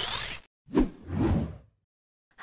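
Intro-animation sound effects: a rising sweep that cuts off about half a second in, followed by two short whooshes.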